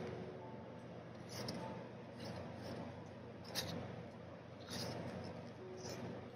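Glossy photobook pages being flipped by hand, with a few short paper flicks, the sharpest a little past halfway, over the steady hum of an electric fan.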